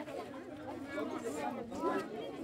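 Background chatter: several people talking at once, quieter than close speech.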